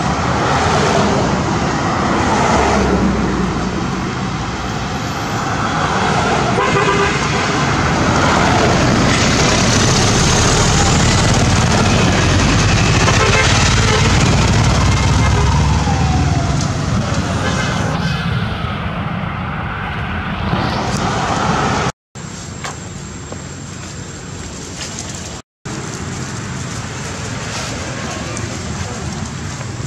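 Steady outdoor background noise of motor traffic, with faint voices mixed in. A deeper rumble swells in the middle, and the sound breaks off abruptly twice near the end.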